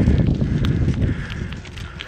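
Wind buffeting the microphone with tyre noise from a Trek bicycle ridden over a sandy dirt trail, with a few light clicks and rattles; the rumble fades toward the end.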